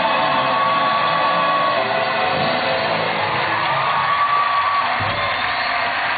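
A woman's singing voice over backing music, holding two long high notes.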